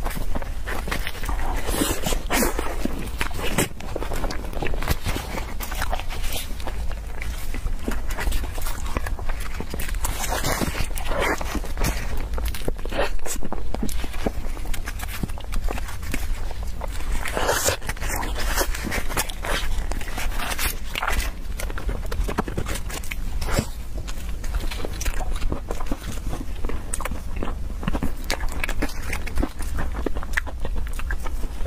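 Close-miked chewing and lip-smacking on soft, sticky peach-shaped mochi: a continuous run of wet clicks and smacks with a few louder clusters, mixed with crinkling of the clear plastic film wrapped around the mochi.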